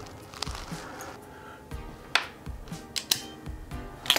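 Soft background music, with a few sharp clicks of metal hand tools being handled on a work mat, about two seconds in and again near three seconds, as a PowerPole contact is set in the jaws of a crimping tool.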